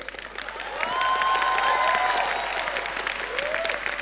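A large audience applauding, the clapping building up over the first second and then holding steady, with a few voices calling out over it.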